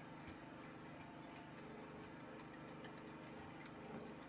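Wire whisk ticking lightly and rapidly against a glass bowl as it stirs thin red colouring and water together, over a faint steady hum.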